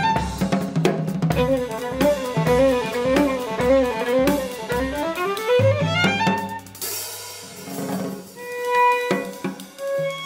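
Violin and drum kit playing together: fast violin runs that climb and fall over a steady kick-and-snare groove with hi-hat. About seven seconds in, a cymbal crash, after which the violin holds long notes over sparser drums.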